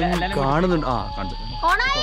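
Music with a singing voice, the voice gliding up and down in pitch over a steady backing.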